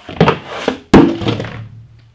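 Large cardboard box being lifted and pulled away: a rough scraping rustle with a few sharp knocks, then one loud thunk about a second in, the loudest sound, which fades quickly.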